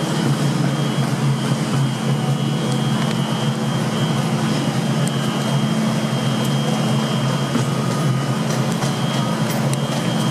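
Class 390 Pendolino electric train at the platform, starting to pull away: a steady low electrical hum with a thin high whine from its traction equipment.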